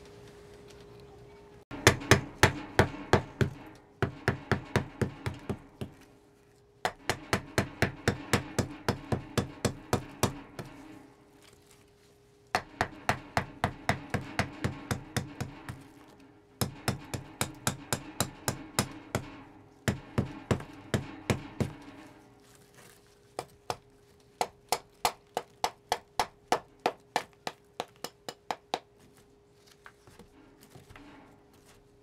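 A hammer chipping and cracking a plaster investment mold off a lost-PLA aluminum casting, in quick runs of taps about five a second with short pauses between runs. A faint steady hum sits underneath.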